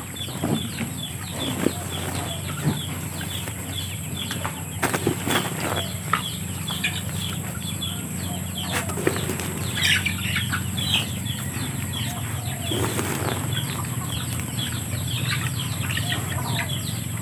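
Dry, powdery rice bran being scooped from a sack with a plastic dipper and poured into a plastic bucket, over and over: a soft rustling, scraping pour with light knocks of plastic on plastic.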